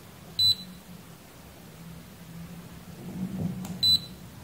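Digital multimeter (KAIWEETS KM601) in diode-test mode giving two short high-pitched beeps about three seconds apart as its probes sit across a MELF diode. The meter reads 0.000 V, and the beep is the sign of a short-circuited diode.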